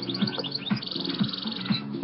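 Small birds chirping and twittering in quick high notes, with a fast buzzy trill about a second in.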